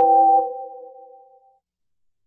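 A short electronic notification chime, several steady tones sounding together and fading out within about a second and a half, of the kind a video-call app plays.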